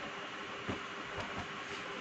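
Steady background hiss with a few faint soft knocks and rustles from folded cloth garments and their packaging being handled, one just under a second in and another a little after.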